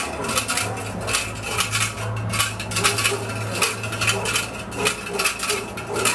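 Rapid, irregular metallic clinking and jingling, many small strikes a second, over a steady low hum.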